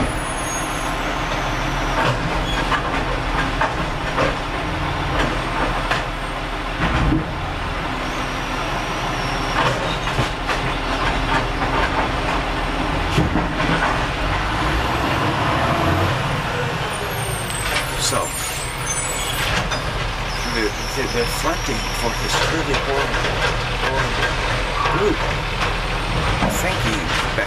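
Loud, steady rumble and hiss of vehicle noise, with a man's voice partly buried under it.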